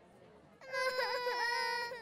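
Animated baby characters crying: a loud, sustained wail begins about half a second in and dips in pitch twice before it ends.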